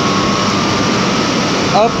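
Loud, steady machinery noise of a running small hydro turbine-generator set: an even rushing noise with a constant hum through it. A man's voice comes in near the end.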